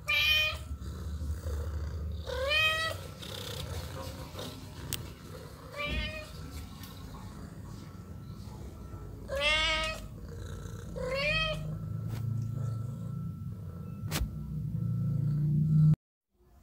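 A house cat meowing five times in separate calls, each rising in pitch and then holding.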